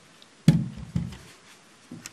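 Handling noise: a sharp knock about half a second in, then a short low thump, as the clock and camera are moved about.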